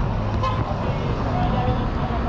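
Busy city street traffic: a steady low rumble of buses and cars, with people talking nearby.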